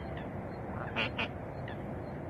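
Mallard giving two short quacks in quick succession, about a second in.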